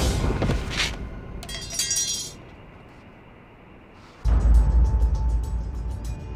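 Dramatic background music with a sharp hit and a brief shattering, glass-like crash in the first two seconds, then a short hush. About four seconds in the music cuts back in loudly with a heavy low pulse and a fast ticking beat.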